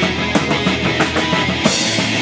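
Live rock band playing: electric guitars over a driving drum kit. Near the end a cymbal crash rings out as the bass drops away.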